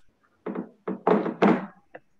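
A quick run of four dull thumps or knocks close to a computer microphone, the loudest two about a second in, followed by a single sharp click near the end.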